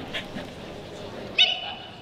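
A single short, sharp shouted command about one and a half seconds in, the handler calling a running border collie into a down; the dog is lying down by the end.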